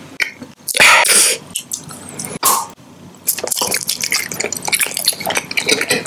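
Close-miked wet mouth sounds: many small saliva clicks and smacks from a closed-mouth chew, with two louder noisy bursts in the first half and a dense run of clicks in the second half.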